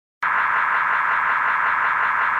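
Loud, steady static-like hiss, heavily filtered into a narrow mid-high band, cutting in abruptly a moment in after a brief silence.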